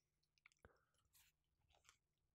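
Near silence, with a few faint soft clicks as a folded, filled pita is handled and bitten into.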